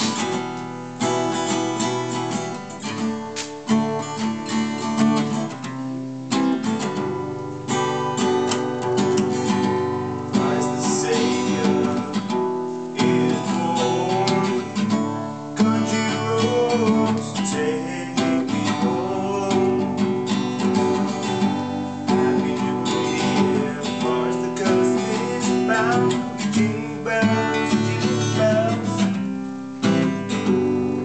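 Acoustic guitar strummed in a steady rhythm, playing chords with no singing yet.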